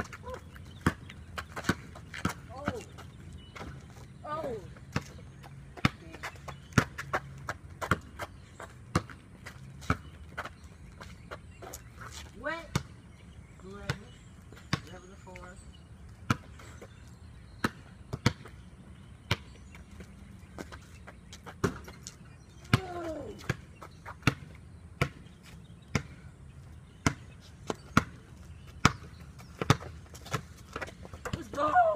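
A basketball bouncing on an outdoor concrete court as a player dribbles. The sharp bounces come about once a second, in irregular runs with short pauses.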